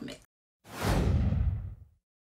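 A whoosh transition sound effect, starting about half a second in and lasting just over a second, sweeping downward from a bright hiss into a low rumble as it fades.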